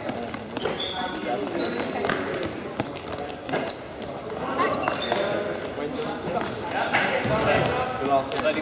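Trainers squeaking and thudding on a sports hall's court floor as players run and cut, with short high squeaks scattered through, and indistinct voices echoing in the large hall.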